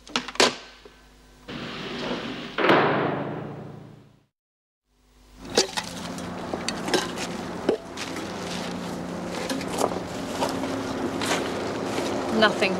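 A telephone handset clicks down. A rising noise then ends in a loud bang that dies away. After a brief gap of silence come scattered knocks and rustling of hands searching through grass at a fence, over a steady low hum.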